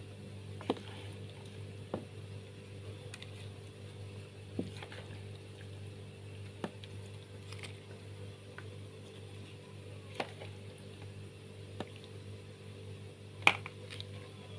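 A wet seblak-and-egg mixture being poured and spooned onto a banana leaf: soft squishy sounds with scattered light taps, the sharpest near the end, over a steady low hum.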